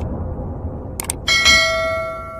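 Subscribe-button animation sound effects: a quick double mouse click about a second in, then a ringing notification-bell chime of several tones that dies away slowly. Under them a low rumble from a boom fades out.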